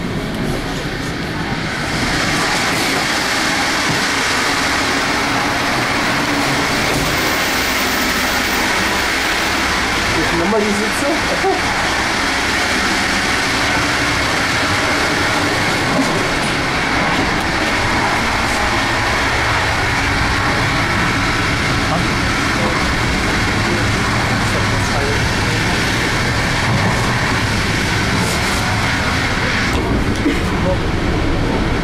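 Steady running noise of an n-Wagen regional passenger coach travelling at speed, heard from inside the carriage, growing louder about two seconds in.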